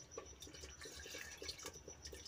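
Buttermilk poured in a thin stream into thick cooked saag in a pot: a faint, quick patter of small drips and splashes, with a few light clicks of the ladle.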